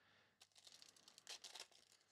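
Faint crinkling and tearing of a plastic trading-card pack wrapper being handled and opened, a quick run of small crackles starting about half a second in.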